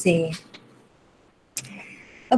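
A woman's voice lecturing in Burmese, trailing off about half a second in. After a pause there is a sharp click about one and a half seconds in, followed by a faint steady hiss.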